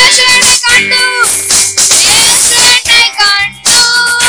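Two boys singing a Christian worship song together. They are accompanied by an electronic arranger keyboard playing a steady beat.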